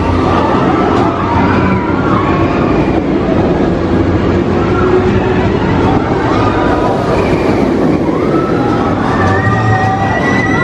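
Incredible Hulk Coaster train running along its steel track, a loud steady rumble, with voices rising and falling in pitch over it.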